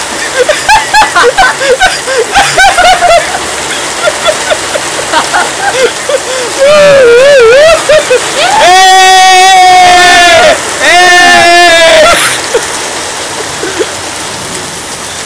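Excited wordless shouting and yelling from a group of people, with two long, loud held yells in the second half, over the steady hiss of heavy rain and running water.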